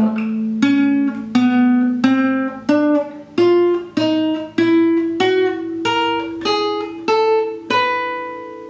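Classical guitar played one note at a time in a four-finger fretting exercise (fingering 3-1-2-4), about a dozen evenly spaced plucked notes climbing in small steps of pitch, the last one left ringing.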